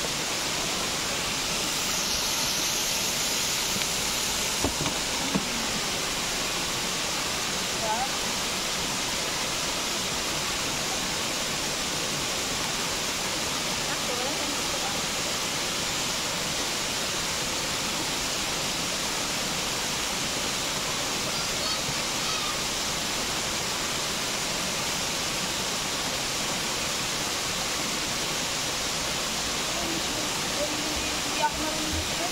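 Steady rushing of a small waterfall pouring over a sandbag-and-rock weir into a shallow river, with a few light knocks early on.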